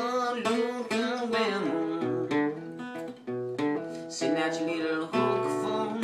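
Gibson acoustic guitar playing a slow blues riff in standard tuning, with single picked notes over low bass notes. A man's sung note wavers in pitch through the first second and a half, closing a line of the verse before the guitar carries on alone.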